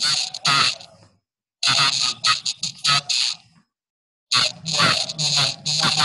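A person's voice coming over a video-call connection, harsh and hissy, in three bursts with abrupt silent gaps between them, too garbled to make out words.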